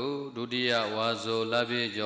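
A Buddhist monk chanting a recitation in a steady, held voice through a microphone, with long drawn-out syllables and a brief breath early on.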